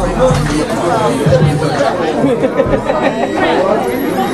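Several people talking over one another: loud, unintelligible chatter.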